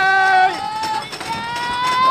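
Roller coaster riders, children among them, screaming: long, high, held shrieks, the second, from about a second and a half in, rising slightly in pitch, over a steady rush of ride noise.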